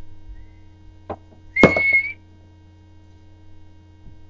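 A knock, then half a second later a sharper hit followed by a brief steady high squeak lasting about half a second, over a low electrical hum.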